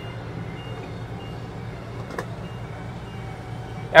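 Class A motorhome's slide-out retracting with the engine running: a steady low hum under faint, short, evenly spaced warning beeps, the alarm that sounds while a slide is coming in. One small click about two seconds in.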